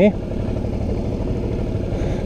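Suzuki V-Strom's V-twin engine running steadily, heard from a helmet-mounted camera as a low, even rumble.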